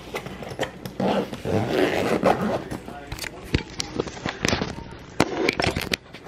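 Handling noise: a backpack and its contents rustling and knocking right against a phone's microphone, with many irregular sharp clicks.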